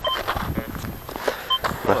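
Fortuna Pro2 metal detector giving two short, identical beeps about a second and a half apart as its coil passes over a target in the soil (a coin is dug up right after). Under the beeps is scuffing and crunching from footsteps and the coil on dry, clumpy ploughed earth.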